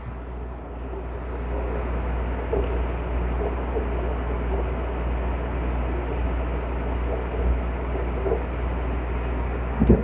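Small aquarium air pump running as an air bubbler in a bin of cleaner: a steady low hum with faint, irregular bubbling.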